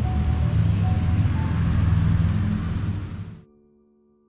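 Rainy outdoor ambience of traffic on a wet road, a steady noisy rush with a low rumble, with soft background music beneath it. The outdoor sound cuts off suddenly about three and a half seconds in, leaving only the quiet music.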